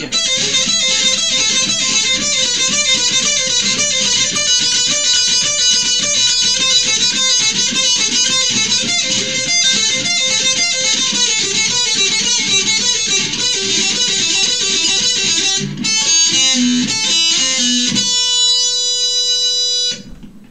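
Jackson electric guitar playing a fast heavy-metal lead passage of rapid notes for about sixteen seconds, then a few slower notes, ending on one long held high note that rings out for the last two seconds.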